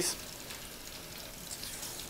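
Kitchen sink faucet running steadily, its stream splashing onto a sponge held beneath it.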